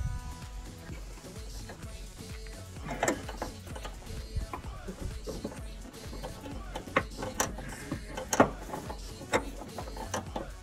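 Background music with scattered clicks and knocks from the plastic fuel filler neck tube being pulled and worked loose by hand, the sharpest of them about seven to eight and a half seconds in.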